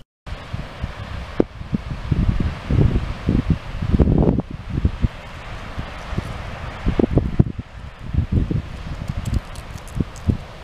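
Wind buffeting a camera microphone outdoors in irregular gusts: a low rumble that swells and drops over a steady rushing hiss.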